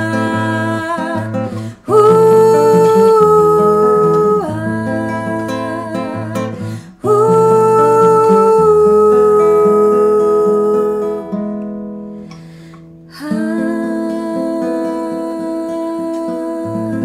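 A woman singing long held notes without clear words over a nylon-string classical guitar, in a Colombian bambuco. The music fades almost away about twelve seconds in, then guitar and voice come back in more softly.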